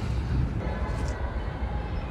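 Steady low rumbling outdoor background noise.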